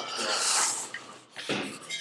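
A person's drawn-out breathy hiss lasting just under a second, followed by a short faint sound about a second and a half in.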